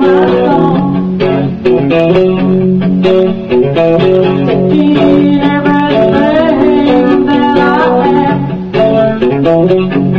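Electric guitar playing an instrumental passage of a song, picked notes and chords.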